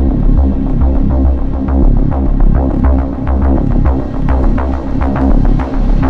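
EBM / industrial electronic dance music: a loud, throbbing synth bassline under a steady, driving beat of sharp electronic drum hits.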